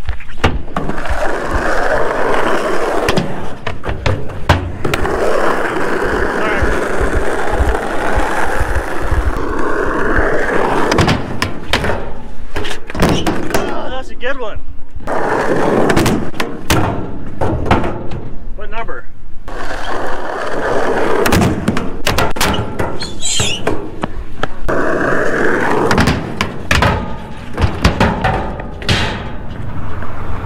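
Skateboard rolling over the skatepark surface and a quarter-pipe ramp, with repeated sharp clacks and thuds as the board's tail and wheels strike the ramp's coping and deck during blunt stall attempts.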